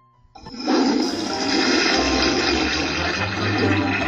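Toilet flushing: a loud rush of water starts suddenly about half a second in and keeps going, with a low rumble under it.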